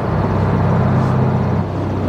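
A 2002 Camaro SS's LS1 V8 running at a steady highway cruise, a low even drone with wind and road noise in the open convertible.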